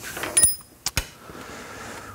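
Steel tools being handled on a wooden workbench: a brief high metallic ring, then two or three sharp knocks about a second in.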